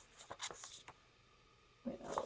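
Faint paper rustling and scraping as a cardstock tag is slid out of a paper pocket in a handmade journal, a few short scratchy strokes in the first second, then quiet.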